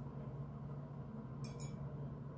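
Two quick, light clinks of a paintbrush against its ink or water container about one and a half seconds in, over a low steady hum.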